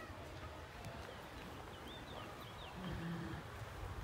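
Faint outdoor background noise with a low rumble, a few faint high chirps about halfway through, and a brief low hum from a person about three seconds in.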